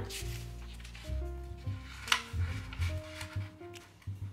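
Background music of slow, held notes changing pitch in steps. Over it, sheets of thin origami paper rustle as a square is brought corner to corner and folded in half along the diagonal, with a sharper crinkle about two seconds in.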